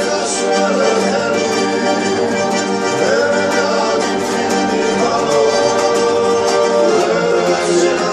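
Georgian folk song performed live: a male voice singing over a strummed panduri and a button accordion's held chords.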